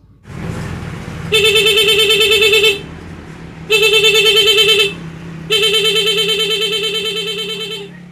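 Scooter's disc horn sounding through an intermittent 'putus-putus' horn module: three blasts, each a rapid pulsing warble rather than a steady tone, the last one the longest.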